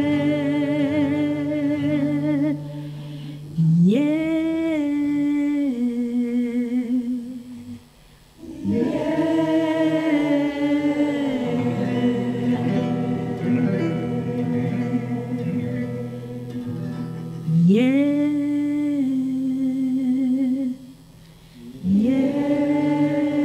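A woman singing long held notes with vibrato, several swooping upward into the note, over a nylon-string acoustic guitar; the voice breaks off briefly about eight seconds in.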